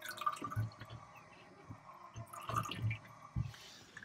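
Fresh water from a Katadyn PowerSurvivor 40E watermaker's thin product hose falling into a plastic jug in faint, irregular drips and little trickles.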